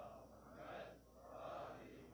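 Faint breaths and sniffs from a man close to the microphone while he holds a tissue to his face, swelling softly twice.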